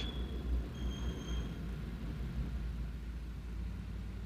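Low, steady rumble of a car heard from inside the cabin, with a faint high thin tone briefly about a second in.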